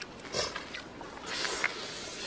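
Close-up mouth sounds of a person eating: a short slurp about half a second in, then a longer hissing suck of air around a second and a half, as greens dipped in spicy sauce are eaten.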